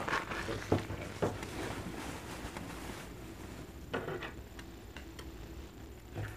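Small cardboard toy box being handled and worked open, with a few short sharp taps and rustles in the first second or so and again about four seconds in.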